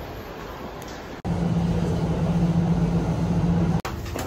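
Background noise of a subway station, then, after an abrupt cut about a second in, a louder steady low mechanical hum with a constant drone that stops just as suddenly shortly before the end.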